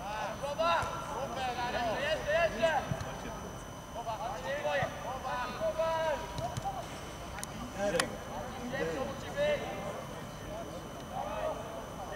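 Footballers' voices calling and shouting across the pitch in short, scattered bursts, with one sharp knock about eight seconds in.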